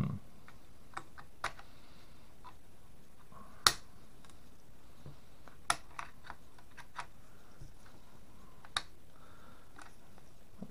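Scattered sharp clicks and knocks from hands working the open action of a Portuguese 1904/39 Mauser rifle while pulling an orange plastic chamber flag out of it. About seven separate clicks, irregularly spaced, the loudest a little before four seconds in.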